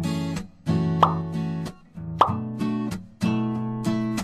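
Background music: an acoustic guitar strumming chords that ring and fade in short phrases, with two sharp percussive hits about one and two seconds in.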